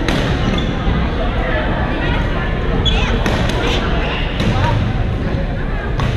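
Badminton hall with several courts in play: sharp racket-on-shuttlecock hits from other courts, a cluster of them a little past halfway, over a steady hubbub of players' voices in a large gym.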